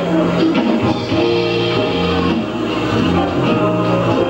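Live jazz band playing the opening of an instrumental tune, with electric guitars, bass, drums and keyboards, on a poor-quality VHS-C recording.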